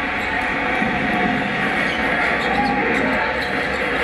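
Basketball game broadcast heard through a television's speaker: a steady hum of arena crowd noise with a ball being dribbled on the court.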